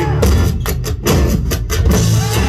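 Live rock band playing a passage without singing: acoustic guitar and electric bass with a drum kit, the drums striking about four times a second in the middle of the passage.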